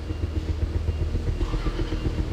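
Low, steady rumble of a vehicle engine running, like a car idling.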